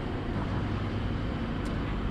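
Steady low rumble of road traffic, with a single light click near the end.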